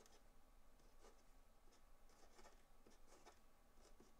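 Faint scratching of a marker pen on paper as an equation is written out, a run of short strokes over a near-silent room.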